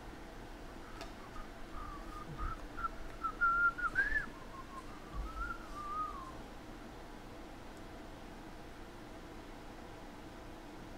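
A person whistling a tune, starting about a second and a half in and stopping after about five seconds. The melody wanders up to its highest note about four seconds in.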